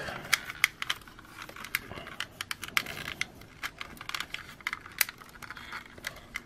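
Plastic parts and joints of a Bandai Digivolving Spirits Agumon action figure clicking as it is handled and its arms and claws are repositioned. The clicks are light and irregular, a dozen or more of them.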